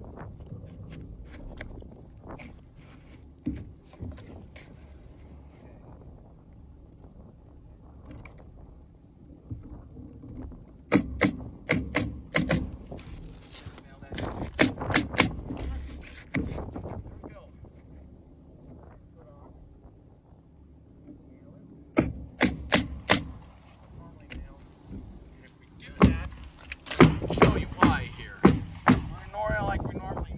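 Pneumatic coil roofing nailer firing nails through asphalt shingles in quick runs of about four sharp shots. The runs come several times, with the longest near the end. Shingles are rustled and handled in between.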